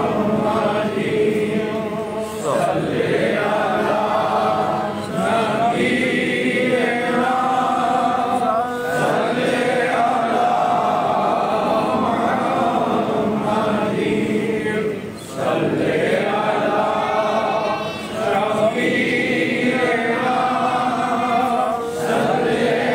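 A group of voices chanting Sufi zikr together, repeating a phrase with short pauses between phrases every few seconds.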